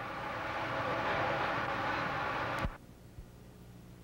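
Printing-press machinery running as a steady mechanical din, cut off abruptly with a click about two and a half seconds in, leaving only a faint low hum.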